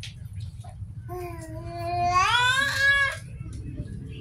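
A child's voice holding one long note for about two seconds, starting about a second in, then sliding up in pitch before it stops.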